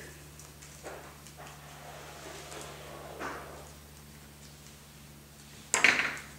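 Faint handling sounds of a plastic landing skid being fitted to a small RC helicopter frame: a few light clicks and rustles, with a louder sharp sound near the end. A steady low hum underneath.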